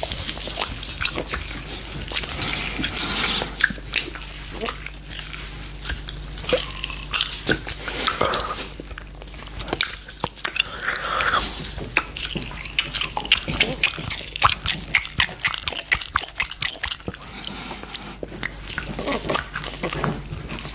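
Close-miked mouth sounds of biting and gnawing on a giant unicorn gummy candy, a run of irregular wet clicks and sticky smacks as teeth and tongue work at the hard, rubbery gummy.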